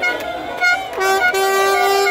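Horns sounding: a few short toots, then, about a second in, one long held blast.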